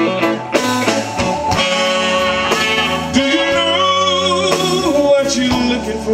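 A live blues band playing: electric guitar, keyboard, bass and drums with a saxophone and trumpet horn section, in a steady, full sound.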